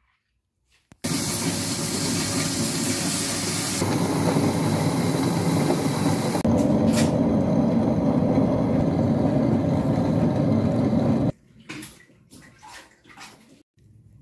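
Electric table-top wet grinder running: its stone rollers churn soaked rice, urad dal and finger millet into idli batter in a steady, dense rush of sound. The sound cuts off abruptly about three seconds before the end, leaving only faint small sounds.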